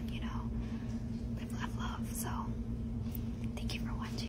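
Faint whispering, a few short soft phrases, over a steady low hum.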